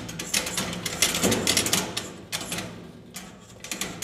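Sugarcane stalk being worked through a spring-loaded manual sugarcane peeler, its blades scraping off the rind in a rapid run of crackling scrapes that eases off briefly past the middle.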